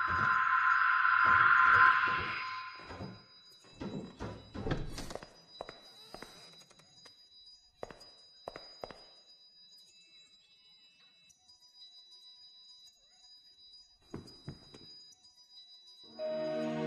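Animated-film soundtrack: a loud swelling music note over a run of evenly spaced thumps, a body bumping down wooden stairs, then a cluster of louder thuds and knocks about four to five seconds in. After that it falls quiet, with a few faint clicks.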